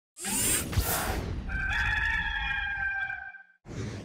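Intro sound effect: a whoosh with a sharp hit, then a recorded rooster crow, one long call lasting about two seconds that cuts off shortly before the end.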